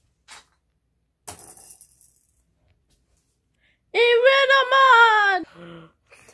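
A child's voice drawing out a long, wavering, high-pitched vocal sound about four seconds in, dropping to a short lower sound at its end. Before it, a brief light rattle or clatter.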